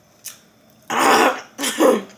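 A woman clearing her throat twice in quick succession, two short rough sounds.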